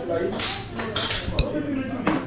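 Dishes and cutlery clinking in a busy bar, several short sharp clinks over background chatter.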